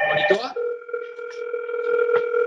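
Safire video intercom indoor monitor sounding its incoming-call ring, an electronic tone of a few steady pitches held together, which sets in about half a second in and carries on: a call from the door station waiting to be answered.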